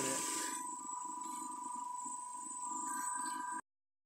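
Steady high-pitched electrical whine over a lower hum from the running DC motor and boost-converter rig, with a brief rustle of test leads being handled at the start. The sound cuts out abruptly just before the end.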